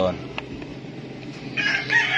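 A rooster crowing: one long, high call starting about one and a half seconds in. A light click sounds about half a second in.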